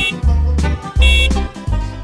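Instrumental children's song music with a steady, bouncy bass beat and short high synth notes.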